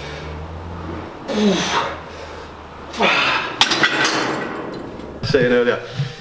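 Forceful, breathy exhalations from a man straining through cable lateral raise reps, one a groan falling in pitch. A few sharp metallic clicks and clanks from the cable machine's weight stack follow at about three and a half to four and a half seconds in. Talking starts near the end.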